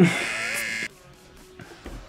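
A short, bright, shimmering musical sound effect that starts sharply and lasts just under a second, then gives way to a low background.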